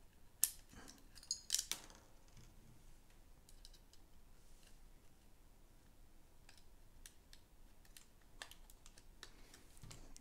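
Light clicks and taps from handling 3D-printed plastic parts and a small screw and nut being fitted by hand: a few sharper clicks in the first two seconds, then only faint, scattered ticks.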